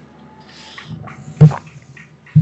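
A dog barking once, about one and a half seconds in, after a short hiss.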